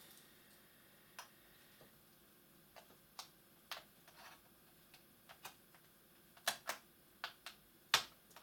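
Irregular small clicks and taps of a hand tool picking at a laptop's bottom cover and rubber foot, a few louder ones near the end.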